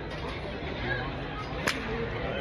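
Golf club striking a ball off a hitting mat: one sharp, crisp crack near the end, over steady background noise.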